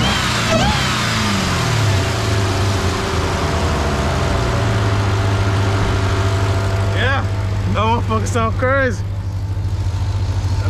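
Jeep Grand Cherokee Trackhawk's supercharged 6.2-litre V8 with the hood open, falling back from a rev over the first couple of seconds and then idling steadily. Voices cut in briefly near the end.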